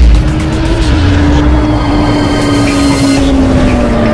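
Motorcycle engine sound effect: one sustained engine note that rises a little early on and then slowly sinks in pitch, over a heavy low rumble and mixed with music. It opens with a loud low hit.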